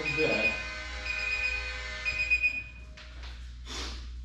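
An electronic alarm beeping in short high-pitched bursts about once a second, stopping a little before three seconds in. A brief voice at the start and a couple of short noise bursts near the end.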